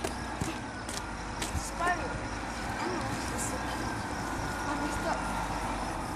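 A coach bus engine running with a steady low rumble, with people's voices faintly in the background.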